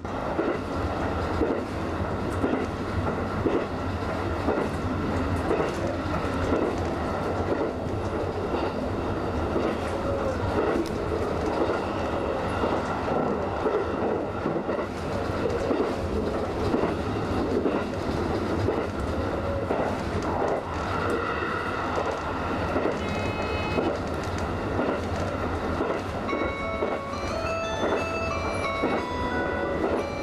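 HB-E300 series hybrid railcar of the Resort Asunaro train running steadily along the track, with a constant low hum under the running noise. A series of ringing tones comes in near the end.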